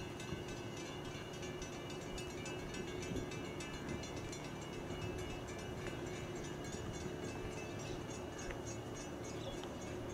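Footsteps on a wooden boardwalk, a steady run of light ticks, over a continuous mechanical hum with a higher whine.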